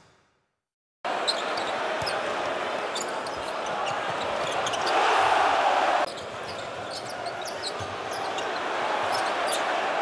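Basketball game sound in a packed arena, starting after about a second of silence: a steady crowd noise with the ball being dribbled and sneakers squeaking on the hardwood court. The crowd swells about halfway through, drops suddenly a second later, and builds again near the end as the quarter's clock runs out.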